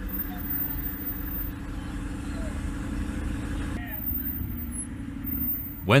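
Humvee diesel engine running steadily at low speed as the vehicle rolls slowly across a concrete dock. The sound shifts about four seconds in, the higher hiss dropping away while the low engine rumble carries on.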